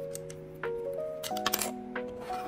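Plastic Lego bricks clicking and clattering in a quick cluster of sharp clicks a little over a second in, as pieces are handled and pressed together, over steady background music.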